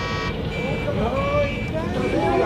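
Sound-effect din of honking cars: a held car-horn tone cuts off just after the start, then shouting voices over a steady rumble of traffic.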